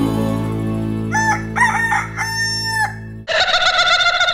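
A rooster crowing once, in a few short rising notes ending in one long held note, over steady background music. Near the end the music changes to a louder track with drums.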